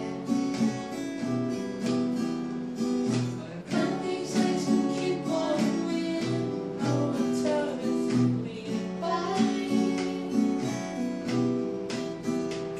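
Two steel-string acoustic guitars strummed together in a duet, with a voice singing the melody in places, most clearly around four seconds in and again around nine.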